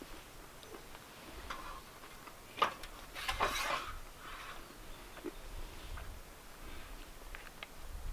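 Quiet handling noises of a wooden plate and cutlery being picked up from a folding table: a sharp clink about two and a half seconds in, a short scrape just after, then a few light ticks near the end.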